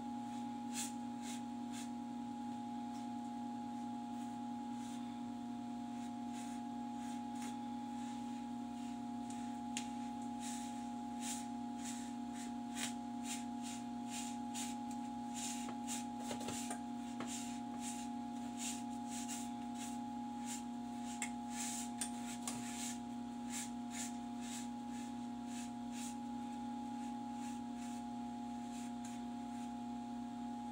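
Fingers digging and scraping through loose, sandy egg-laying substrate in a plastic tub to uncover lizard eggs, heard as a run of short, scratchy rustles that come thickest in the middle. A steady low electrical hum runs underneath.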